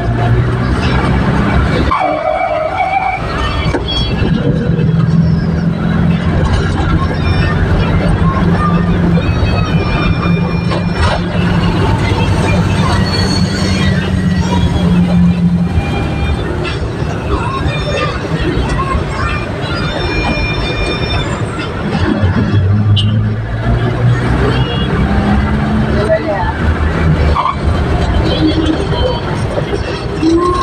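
Jeepney's engine running as it drives through traffic: a low steady drone that steps up and down in pitch a few times as it speeds up and slows, over road and traffic noise.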